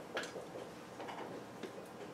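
Dry-erase marker writing on a whiteboard: a few short, irregular strokes and taps, the sharpest about a quarter second in.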